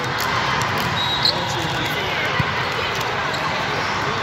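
Echoing hubbub of a busy indoor volleyball hall: many voices chattering at once, with scattered thuds of volleyballs being hit and bounced, and a short high squeak about a second in.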